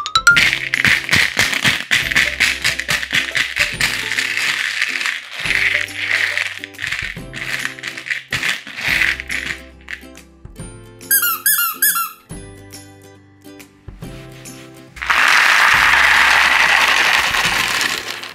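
Candy-coated chocolates clicking and rattling against each other and a plastic tray over background music, then a rubber squeaky toy squeezed several times in quick succession about eleven seconds in. Near the end comes a loud rush as the candies are tipped out onto artificial grass.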